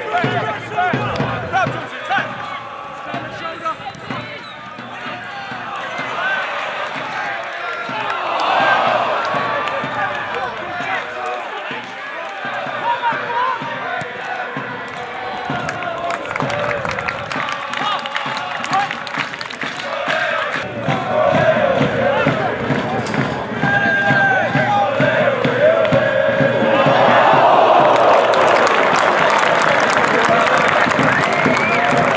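Pitchside sound of a football match: players and spectators shouting and the ball being kicked now and then. Crowd noise swells near the end.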